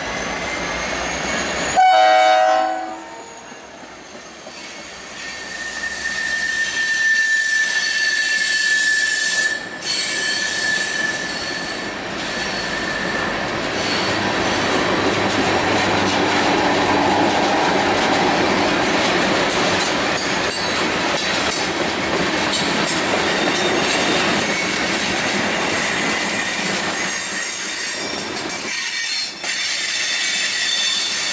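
A locomotive horn sounds briefly about two seconds in and is cut off. A freight train's cars then roll past close by: first a steady high-pitched wheel squeal for several seconds, then the continuous clatter of tank cars and hoppers on the rails.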